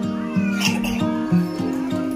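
Music with a quick melody of short, repeated notes, about four a second, with faint high gliding calls over it.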